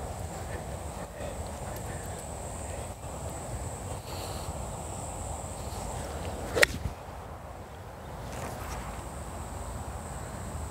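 Strong wind buffeting the microphone, with one sharp crack about six and a half seconds in: a golf iron striking the ball.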